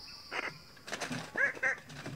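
Rainforest ambience: a steady high insect drone cuts off a little before halfway, and about four short, honking bird calls follow in quick succession.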